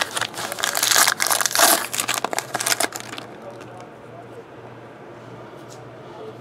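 Foil wrapper of a trading-card pack crinkling and tearing as it is opened by hand, loud for about three seconds, then dying down to a few faint clicks as the cards are handled.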